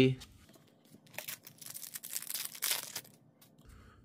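A foil trading-card pack wrapper being torn open and crinkled, with cards sliding out, in scattered rustling bursts between about one and three seconds in.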